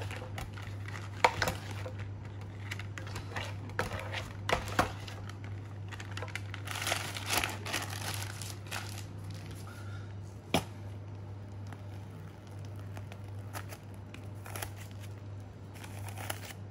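Plastic disposable piping bag crinkling as it is filled with mousse and twisted, most densely a few seconds past the middle. Sharp clicks and scrapes come from a scraper against a stainless steel mixing bowl. A steady low hum runs underneath.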